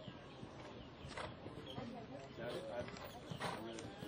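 Faint hoofbeats of a show-jumping horse cantering on arena sand, with two louder thuds, about a second in and again near the end, over indistinct voices in the background.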